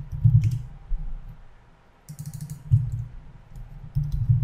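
Computer keyboard typing: a few dull keystroke knocks, then a quick run of sharp key clicks about two seconds in.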